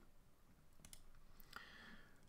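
Near silence with a few faint, sharp clicks of a computer mouse about a second in.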